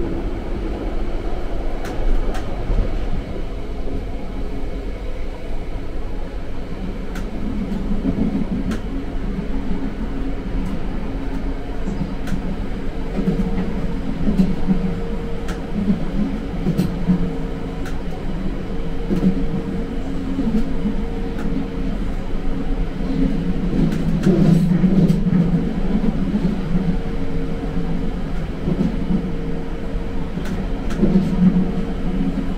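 London Underground Central line 1992 Stock train running between stations, heard from inside the carriage: a steady rumble of wheels and track with a humming tone that comes and goes from about halfway through, and occasional sharp clicks.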